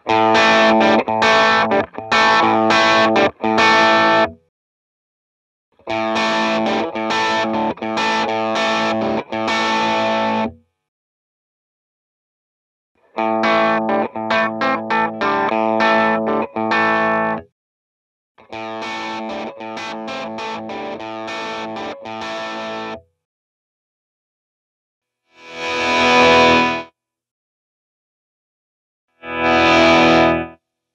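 Overdriven electric guitar phrase played through a volume pedal set before an overdrive pedal, heard four times, the second and fourth quieter with the volume pedal partly back so the overdrive cleans up. Near the end come two short volume swells with the volume pedal after the overdrive, rising and falling in level.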